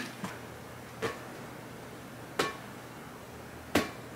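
Four brief, sharp knocks or taps, spaced irregularly about a second apart, over a faint steady low hum.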